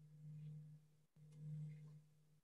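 Near silence with a faint, steady low hum that breaks off briefly about a second in and then resumes.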